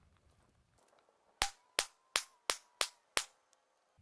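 Six shots from a Heritage Rough Rider .22 rimfire single-action revolver, each a short sharp crack, in quick succession about a third of a second apart.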